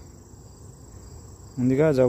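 Insects chirring in a steady, thin, high-pitched drone in the background. A man's voice starts near the end.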